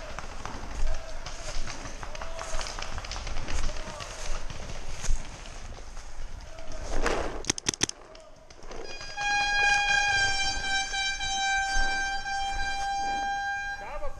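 A quick cluster of sharp cracks from a paintball marker firing, then a single long, steady horn blast of about five seconds, the kind of air horn used to signal a paintball game.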